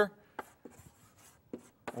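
Chalk drawing lines on a blackboard: a few short, faint taps and scratches as small boxes are sketched.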